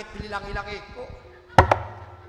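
A man's drawn-out vocal call, then about one and a half seconds in a single hard drum stroke with a short low ring, the loudest sound here.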